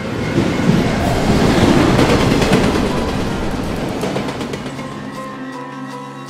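A tram passing close by on its rails: a loud rush of wheel-on-rail noise that swells over the first two seconds and then fades away, with music underneath.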